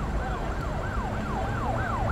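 Emergency siren yelping in quick repeated sweeps, about three a second, over a low rumble, growing louder toward the end.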